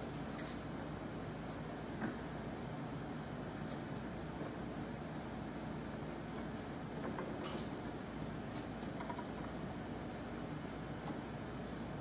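Steady low hum of workshop room noise, with a few faint light clicks and knocks of thin plywood rails being handled and snapped onto the board's plywood frames, one about two seconds in and a few more later on.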